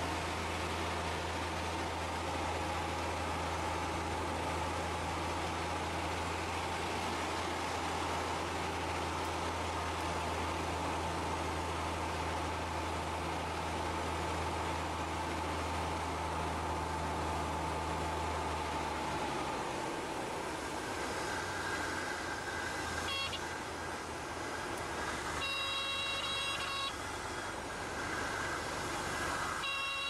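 Light aircraft cabin noise during landing and rollout: a steady rush of engine and airflow with a low drone that stops about two-thirds of the way through. Several short high-pitched tones sound near the end.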